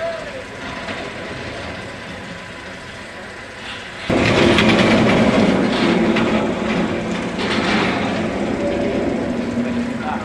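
Roller coaster train running along its steel track: a loud wheel rumble with a steady hum in it comes in suddenly about four seconds in, over quieter background noise before.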